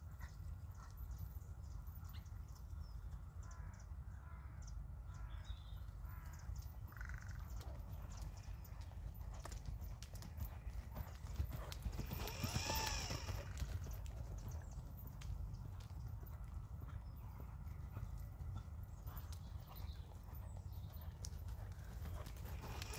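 Hoofbeats of a horse trotting on a rubber-chip arena surface, with a brief louder sound about twelve seconds in as the horse passes closest.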